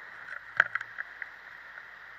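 Steady rushing hiss from a camera carried on a hang glider in flight, with a quick run of sharp clicks about half a second in.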